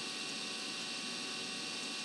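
Steady background hiss with a faint electrical hum, unchanging throughout, with no splashing or other event sounds.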